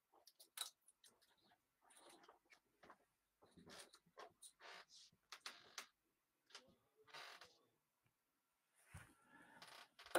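Near silence: faint scattered clicks and low murmurs.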